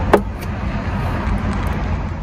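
Steady low rumble of road traffic, with a single short click just after the start.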